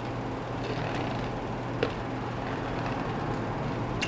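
Steady low background hum with one faint click a little under two seconds in.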